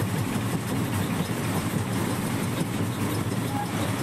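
Steady running rumble of a moving passenger train, heard from inside the coach near its doorway.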